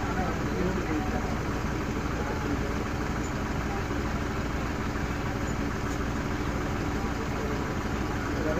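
Safari jeep engine idling steadily.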